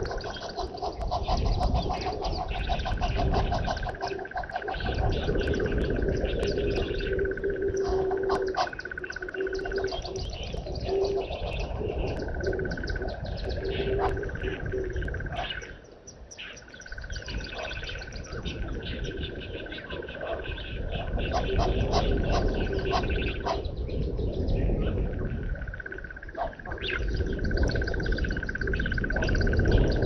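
Bushveld birds chirping and calling, over a steady high trill that runs for several seconds, stops and starts again. A run of lower repeated call notes comes in the first half, and a low rumble sits underneath throughout.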